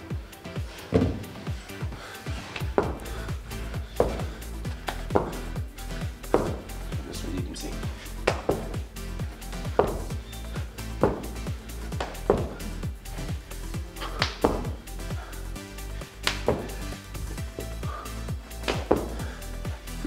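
Background music with a steady bass line, over a person's feet thudding down on a gym floor in tuck jumps, landing roughly once a second.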